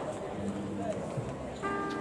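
Chatter of many voices from a crowd of people milling about. About one and a half seconds in, a held musical chord starts over it.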